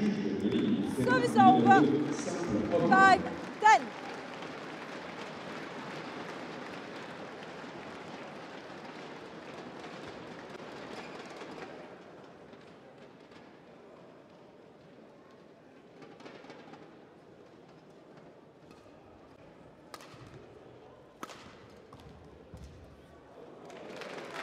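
Voices and crowd noise in a large sports hall, fading after the first few seconds to quieter hall ambience. Near the end there are a few sharp knocks from racket strikes on a shuttlecock and players moving on the court.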